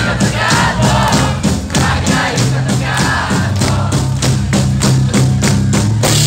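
Live rock band playing, with a steady drum beat of about four hits a second over bass and voices singing.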